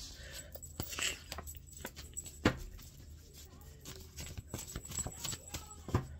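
Scattered light clicks and taps from cards and small objects being handled on a desk. The sharpest knock comes about two and a half seconds in, over a faint low hum.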